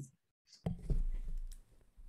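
A sharp click about half a second in as a second microphone opens on a video call, followed by low hum and faint room noise from the open mic.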